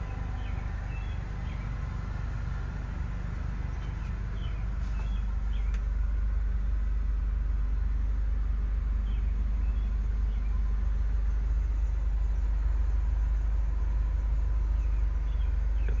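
Idling engine of a 2006 MINI Cooper S: a steady low hum that gets a little louder about five seconds in, with a few faint bird chirps now and then.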